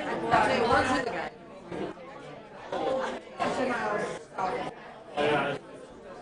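Indistinct chatter: people talking among themselves, the words not clear enough to make out.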